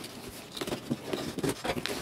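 Cardboard shipping box being handled and its top flaps pulled open: faint, irregular scraping and rustling of cardboard with a few light clicks.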